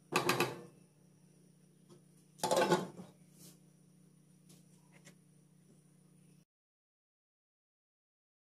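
Two short clattering bursts of cookware, about two seconds apart, as a glass pot lid is set on a metal pan, followed by a few faint ticks. The sound cuts off abruptly near the end.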